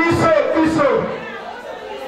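Speech: people talking, voices over room chatter, louder in the first second and quieter after.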